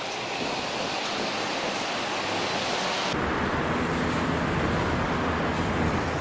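Steady outdoor rushing noise of wind and distant surroundings, with no distinct event. About halfway through it changes abruptly, the high hiss dropping away and a deeper rumble coming in.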